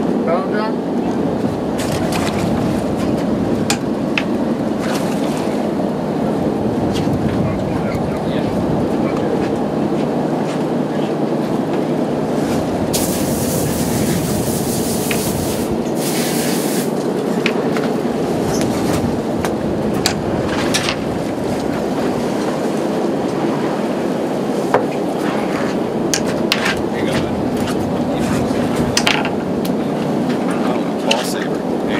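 Sportfishing boat's engine running steadily with wind and sea noise on deck, scattered clicks and knocks over it as anglers reel in. A few seconds of hiss come about halfway through.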